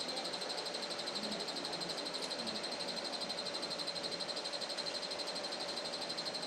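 Steady background hum with a faint high whine, pulsing quickly and evenly; no voices.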